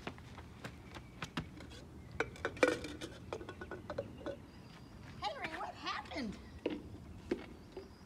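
Running-shoe footsteps on a concrete driveway and light plastic stacking cups clacking as three are stacked up, heard as scattered sharp clicks and knocks. A brief voice-like sound gliding downward comes about five seconds in.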